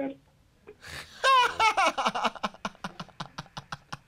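Laughter breaking out about a second in after a brief near-quiet gap, loud at first and then running on in quick repeated ha-ha pulses.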